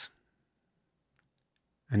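Near silence: room tone in a pause between words, with a couple of very faint ticks. A word ends just at the start and the next begins near the end.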